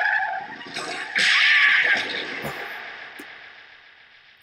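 Anime sound effect of car tyres screeching under hard braking: one screech dies away just after the start, then a louder one sets in about a second in and fades out gradually.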